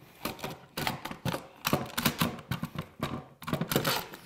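Irregular clicks and knocks of a Bessey Revo parallel jaw clamp being handled, its head slid along the bar and parts of it tapping together.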